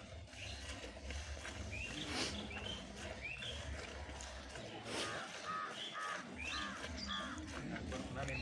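Birds calling, short rising chirps repeating, with a run of harsher crow-like calls about five to seven seconds in.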